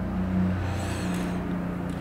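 A steady low background hum, with a faint high whirring in the middle.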